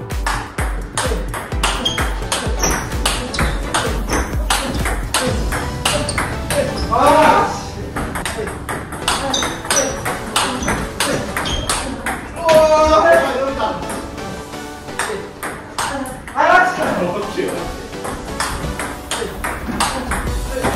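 Table tennis rally of forehand topspin drives: the plastic ball cracks off rubber rackets and clicks on the table in quick succession throughout. Background music and voices run underneath, loudest in short stretches about 7, 12 and 16 seconds in.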